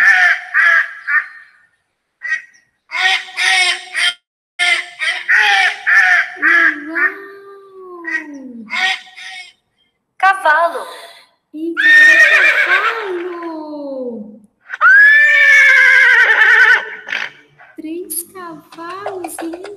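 Ducks quacking in a rapid series of short calls for several seconds, followed by a horse whinnying loudly twice, each neigh falling in pitch.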